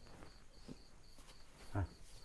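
Crickets chirping faintly in the night, short high chirps repeating about three to four times a second, with a brief voice sound near the end.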